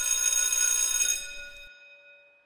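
A bell-like electronic chime from an intro sound effect: one sustained ringing tone with several overtones that holds for about a second, then fades away.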